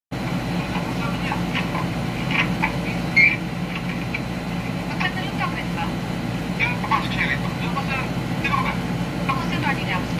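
Film dialogue on an old, worn soundtrack, the voices unclear under a steady low hum and hiss.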